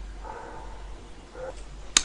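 Low steady electrical hum under faint background noise, with one sharp click near the end.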